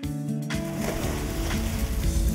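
Background music with steady held tones. About half a second in, a steady hiss from a lit gas stove burner comes in beneath it.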